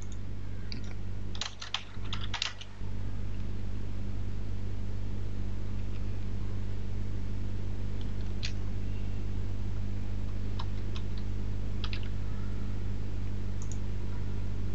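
Typing on a computer keyboard: a quick run of keystrokes in the first three seconds, then a few scattered key clicks, over a steady low hum.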